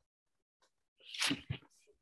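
About a second of dead silence, then a short, breathy burst of a person's voice over a video call, lasting about half a second.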